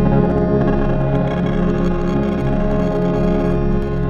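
Improvised experimental music from an electric guitar run through effects pedals, layered with a small keyboard synth: a dense, sustained drone of many held tones over a steady low bass, with faint crackles on top.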